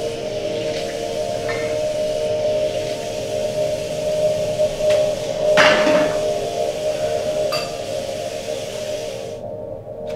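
Kitchen tap running into a sink while dishes are washed, with several clinks and knocks of dishes, the loudest about halfway through. The water stops just before the end.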